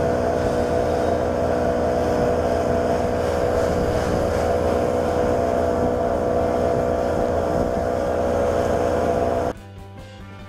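Johnson 130 V4 two-stroke outboard motor running at steady high revs as the boat planes, with the rush of water off the hull. The engine note holds one pitch throughout, then cuts off abruptly shortly before the end.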